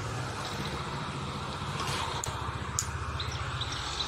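Steady low mechanical hum of a biofloc tank's aeration air blower running continuously, with a few faint bird chirps and two small clicks in the second half.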